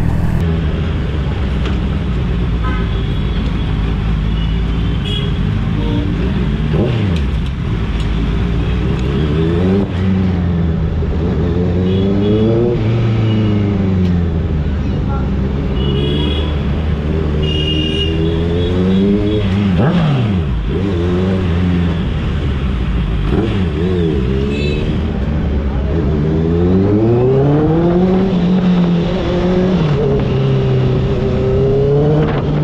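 A Honda sport motorcycle's engine, heard from the rider's own bike, rising and falling in pitch several times as it accelerates and eases off in slow street traffic. Several short horn toots sound over it.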